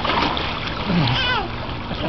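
Pool water splashing for about half a second as a toddler is brought down into a backyard swimming pool, followed by a short high-pitched child's voice.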